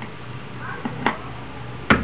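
Hair-dye developer bottle and mixing bowl being handled while measuring out developer: two small sharp clicks about a second in, then one louder sharp click near the end.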